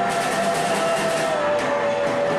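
Live rock band playing: a harmonica holds one long note that sags slightly in pitch partway through, over electric guitars.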